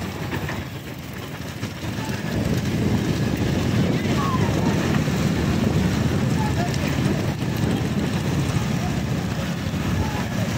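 Wind rushing over the microphone and motorbike engines running, recorded from a moving motorbike, with voices over the noise. The noise grows louder about two seconds in.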